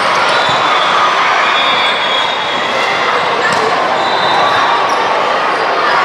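Loud, echoing din of a busy volleyball gym: many overlapping voices, with a few sharp hits of the ball.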